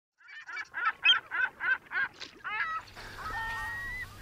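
A bird calling in a rapid series of about seven harsh, evenly spaced calls, roughly three a second, followed by a few shorter gliding calls and then a single thin, held high tone near the end.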